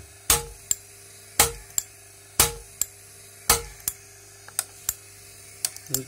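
A 1978 Cadillac Eldorado windshield wiper motor running with its windshield washer pump engaged. The motor gives a steady low hum, and the pump mechanism gives a loud knock about once a second, each followed by a lighter click. After four knocks only lighter ticks remain.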